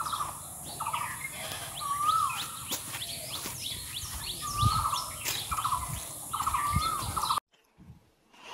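Asian koel calling repeatedly, a whistled call that rises then falls, about every two seconds, over quick high chirps of other small birds. The sound cuts off shortly before the end.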